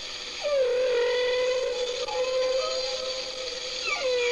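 A long wailing tone that slides in about half a second in and holds steady, then a second one slides in near the end.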